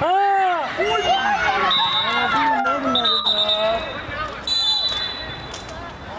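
Loud shouting from people at the side of a youth football pitch, with long drawn-out yells rising and falling in pitch, loudest at the start. A thin high whistle-like tone sounds three times in the second half over quieter voices.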